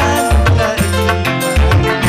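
Electronic keyboard (orgen) dance music with a pulsing bass line, held chord tones and fast ticking percussion on top.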